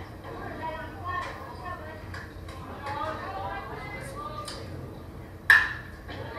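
Faint chatter of spectators' voices at a baseball game, with one sharp, ringing crack about five and a half seconds in.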